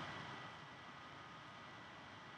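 Quiet room tone in a lecture hall: a faint steady hiss with a thin, steady high-pitched tone, and no speech.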